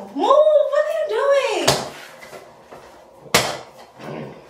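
A person's voice in drawn-out, rising-and-falling laughing exclamations, then two sharp thumps about a second and a half apart.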